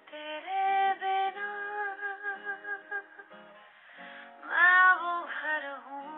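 A woman singing long held notes that waver in pitch, with an acoustic guitar accompanying her; the loudest phrase comes about four and a half seconds in.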